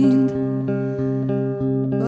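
Instrumental band music in a short gap between sung phrases: plucked electric or acoustic guitar notes over steady held chords, a little quieter than the singing around it.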